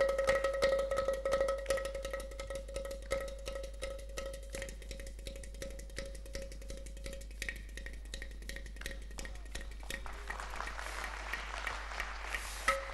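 Clay pot drums played with the hands in rapid, light strokes, getting softer over the first few seconds, over a steady held drone tone that fades away about halfway through.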